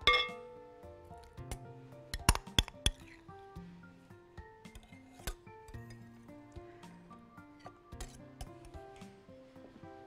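A spoon clinking and tapping against glass bowls as soft cheese is scooped out into a mixer bowl: a cluster of sharp clinks about two to three seconds in and a few more later. Soft background music plays underneath.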